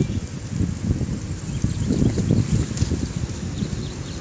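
Wind buffeting the microphone: an uneven, gusty low rumble that swells and fades.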